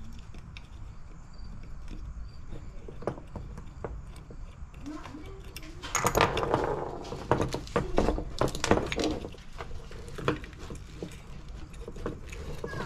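Small metal and plastic parts of a motorcycle handlebar switch housing clicking and rattling as it is handled and taken apart, busiest about six to nine seconds in.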